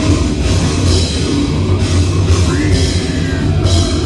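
Heavy metal band playing live and loud: distorted guitars and bass under drums with repeated crashing cymbals.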